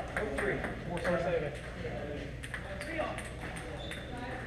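Table tennis balls ticking off paddles and tables in rallies, a string of light, irregular clicks, with people's voices in the background.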